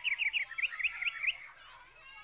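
A small bird chirping: a quick run of short, high chirps that stops about a second and a half in, used as the sound effect of a logo sting.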